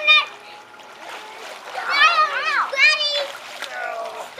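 Young children's high-pitched calls and squeals, loudest about two to three seconds in, over water splashing in a backyard above-ground pool.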